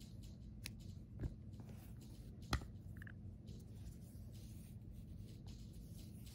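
Faint handling noise of a crocheted piece and yarn being picked up and moved by hand: a few soft clicks and taps over a low steady room hum, the sharpest about two and a half seconds in.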